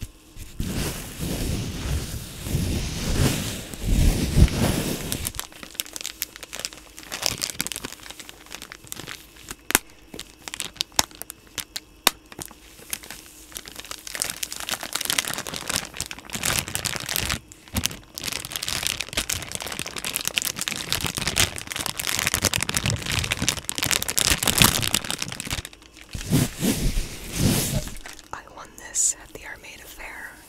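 A Lysol disinfecting wipes soft plastic pack and a wet wipe handled right at the microphone: the wipe pulled out of the pack, the plastic crinkling, and the wipe crumpled and rubbed. It comes in stretches of busy rustling with sparser crackles and clicks between them.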